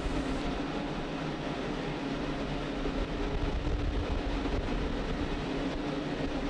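Falcon 9 on the launch pad in startup with liquid oxygen venting: a steady rushing hiss over a constant low hum.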